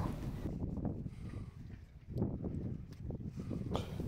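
Faint footsteps and soft knocks on a wooden-decked pontoon, a few thumps near the middle and later, over a low steady rumble.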